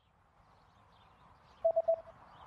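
A rapid run of about four short beeps at one steady pitch, an on-screen cue sound effect, over faint background ambience that fades in.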